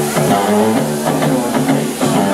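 Live rock band playing amplified music, with electric guitars over bass and drums.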